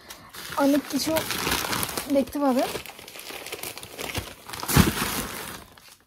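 Cardboard cartons and plastic packaging being handled and rummaged through, a steady crinkling with a louder knock near the end. A couple of short spoken sounds come in the first half.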